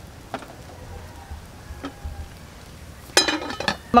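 A low steady background from a pot of pork intestines boiling over a wood fire, with a few faint isolated clicks. A voice speaks briefly near the end.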